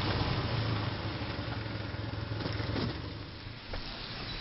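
A car engine running with a low, steady hum that dies away over the few seconds, then a single sharp click near the end.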